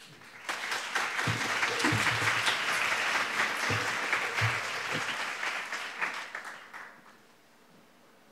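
Audience applause after a talk. It starts about half a second in, holds steady for several seconds and dies away by about seven seconds.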